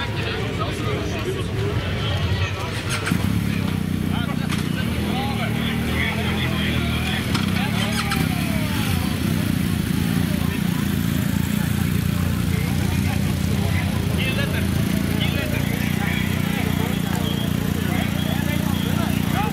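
Engines of police motorcycles and an ambulance running and moving off, a steady low engine sound that grows louder about three seconds in, with people talking nearby.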